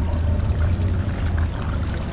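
Bass boat's outboard motor idling in a steady low rumble, with water lapping and splashing at the hull.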